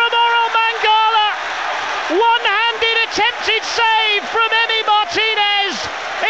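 Football commentator's excited, high-pitched voice over the noise of a cheering stadium crowd just after a goal.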